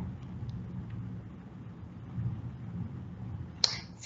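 Low background noise of a lecture microphone with a faint rumble and a few faint ticks. Near the end comes one short hiss.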